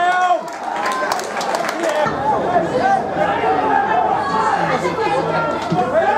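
Football spectators near the pitch talking and shouting over one another, several voices at once, with a few short sharp clicks about a second in.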